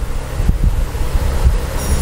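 Low, steady rumbling noise on a clip-on microphone, the kind made by air or clothing moving against the mic, with no speech.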